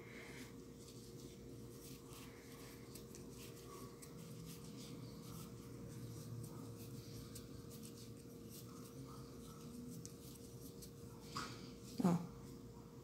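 Faint rubbing and light scratching of a crochet hook drawing crochet thread through stitches as they are worked.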